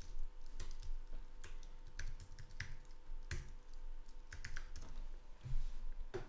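Computer keyboard typing, keystrokes coming singly and in short irregular runs with pauses between them.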